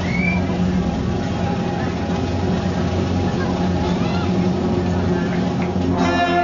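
A steady low hum under the chatter of a crowd's voices.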